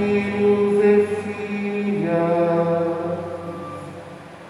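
Sung liturgical chant at Mass: long held notes that change pitch about halfway through and fade near the end.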